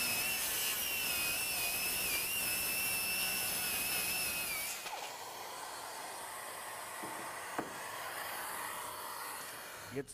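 Bosch GKS 18V BITURBO brushless cordless circular saw cutting through an oak board, its motor whining with a slightly wavering pitch under load. The cut ends abruptly about five seconds in, leaving a quieter steady hiss and a single knock near the end.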